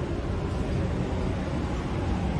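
Steady low rumbling outdoor city ambience, like distant traffic, with no single event standing out.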